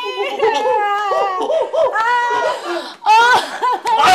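A woman's loud, high-pitched wordless vocalizing in repeated short cries that rise and fall in pitch, with a louder burst after a brief break near the end.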